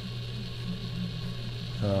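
A steady low hum under a faint hiss, with a man's 'uh' just before the end.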